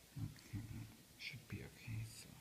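Quiet muttered speech, a man talking half to himself in short low fragments.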